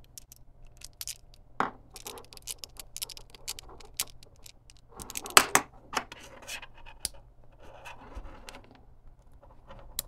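Close handling of small wiring parts: hookup wires rubbing and being pushed into lever-type splice connectors, with scratching and irregular sharp plastic clicks, the loudest about five and a half seconds in.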